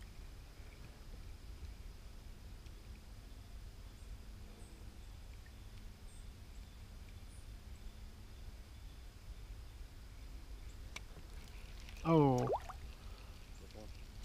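Quiet river outdoor ambience with a low steady rumble, a single sharp click about 11 seconds in, and a brief man's voice, a short falling utterance or laugh, about 12 seconds in.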